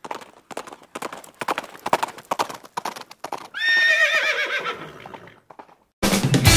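Horse hooves clip-clopping in a quick, uneven run, then a horse whinnying about three and a half seconds in: one quavering call falling in pitch and fading over about a second and a half.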